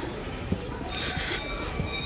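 A metal bell is struck once about a second in and rings on with several steady high tones. Soft footsteps thud on the stone steps underneath.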